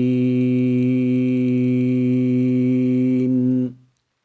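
A man's voice reciting the Quranic word khāsirīn, holding its final long 'ī' on one steady chanted note, the lengthened vowel of a tajwid pause. The note cuts off near the end.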